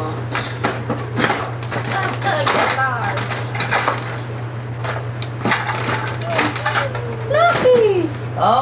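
Cardboard toy box being pulled open and the plastic toy taken out, a run of short crinkling and scraping sounds, with indistinct voices in the room and a steady low hum.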